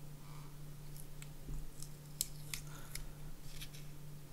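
Fingernails picking and scraping at the edge of a paper sticker on a small hard-plastic housing, giving faint, irregular little clicks and scratches.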